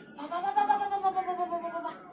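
A person wailing: one long held cry that rises a little and then slowly falls, lasting nearly two seconds.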